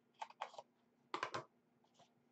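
Scissors snipping the paper end of a rolled paper cylinder to trim its flaps. There are two short clusters of quick snips, one just after the start and one a little past the first second.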